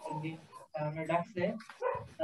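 A person speaking over a video call, in short phrases with brief gaps between them.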